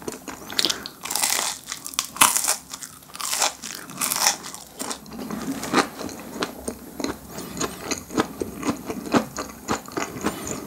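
Close-miked crunching of a crisp fish-shaped pastry: two loud crackly bites in the first half, then steady chewing with many small crunches.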